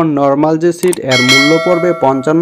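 A bell-chime sound effect from a YouTube subscribe-button animation: a single bright ding that starts about a second in and rings on steadily, over ongoing talk.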